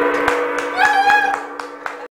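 Large Chinese Wuhan gong ringing on after a single mallet strike, its steady mix of tones slowly fading.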